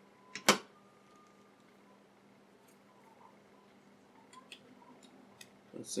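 Handling clicks from the parts of a disassembled iPod: one sharp click about half a second in, right after a smaller one, then a few faint ticks.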